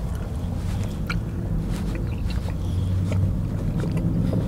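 Close-up chewing and mouth clicks of a person eating a soft egg-and-cheddar pancake, over a steady low rumble.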